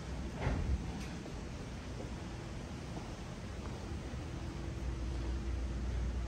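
Faint hallway background with a light click about half a second in. About five seconds in, a low steady hum with a faint steady tone starts up: elevator hoist machinery beginning to run as the called car comes.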